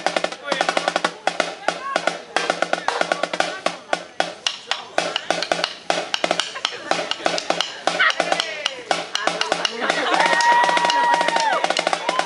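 Snare drum played with sticks in fast strokes and rolls, with voices calling out over the drumming. Near the end a long, steady high call is held for over a second above the drum.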